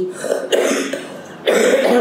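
A woman coughing twice, the first cough about half a second in and a louder one near the end.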